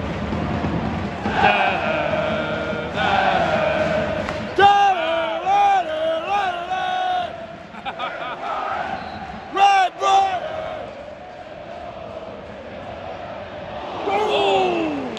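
Football crowd in a stadium singing a chant together in unison. The tune rises and falls through its middle, comes back briefly after about ten seconds, then gives way to a lower general crowd noise.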